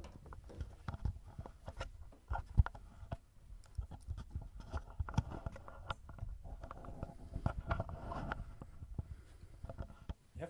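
Handling noise of a person getting up from a wooden piano bench and moving about the room: irregular knocks, thumps and rustles with footsteps, one sharp knock standing out about two and a half seconds in.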